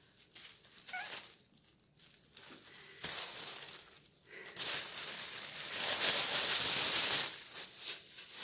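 Rustling and crinkling as bundles of rolled fat-quarter fabric and their packaging are handled and put away, loudest from about halfway through until shortly before the end.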